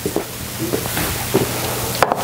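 A steady hiss with a faint low hum and a few light clicks.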